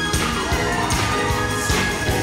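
Live band playing an instrumental passage without vocals: held chords over a steady drum beat, with cymbal crashes near the start and near the end.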